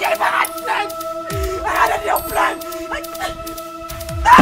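Background film music holding a few steady sustained tones, with a series of short, sharp yelping cries over it.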